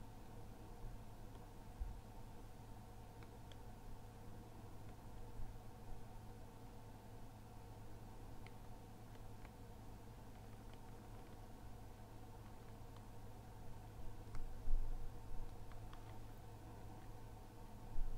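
Quiet room tone with a steady low hum, broken by a few faint clicks and soft knocks from a canvas being handled and tilted, with a short cluster of louder bumps near the end.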